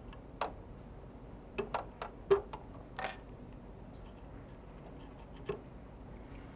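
Scattered small, sharp clicks and ticks, about eight of them and mostly bunched in the middle, from a metal whip-finish tool and scissors being worked on the thread of a fly held in a vise.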